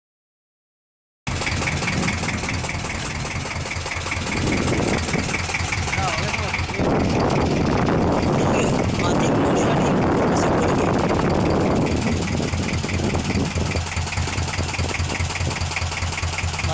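A boat engine running steadily with a low, even pulse, starting about a second in. From about four to twelve seconds a loud rushing noise rides over it.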